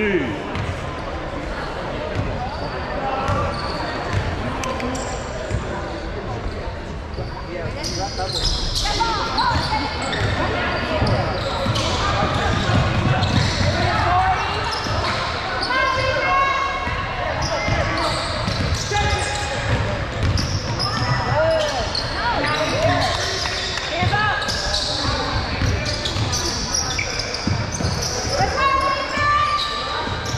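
A basketball bouncing repeatedly on a gym floor during a game, with many short sharp knocks and voices of players and spectators throughout; the activity grows busier about eight seconds in.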